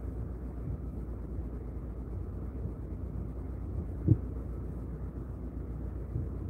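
Steady low drone of a ship's engine and machinery, heard inside a cabin, with a single short thump about four seconds in.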